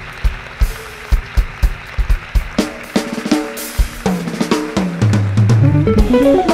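Live jazz-fusion band playing. A drum kit keeps a steady groove with bass drum and snare hits. About halfway in, pitched instrument notes join, and near the end a loud, low bass line comes in.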